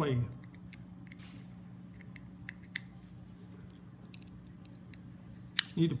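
Faint, scattered light clicks of a jeweler's screwdriver and a Victrola No. 2 phonograph reproducer being handled, over a steady low hum.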